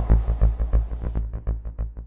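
Electronic intro sound effect: a deep, rapidly pulsing bass throb, about eight or nine pulses a second, fading out. The high hiss over it drops away about a second in.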